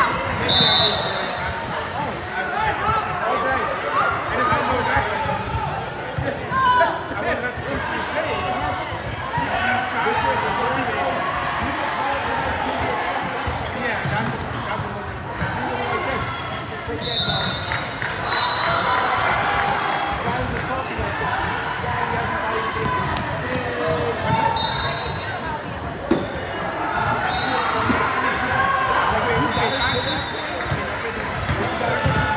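Sounds of a basketball game in a large, echoing gym: a basketball bouncing on the hardwood court, indistinct voices of players and spectators, and several short high sneaker squeaks.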